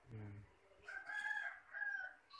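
A loud, high animal call held for about a second, with a brief break near the end. It follows a short low, voice-like sound at the start.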